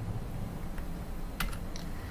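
A few soft computer-keyboard key clicks in the second half, over a low steady room hum.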